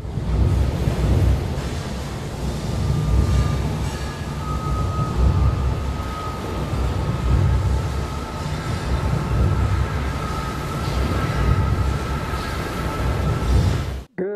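A loud, deep, steady rumble, the sound bed of a produced advertisement. A faint high held tone comes in about three seconds in and lasts to the end.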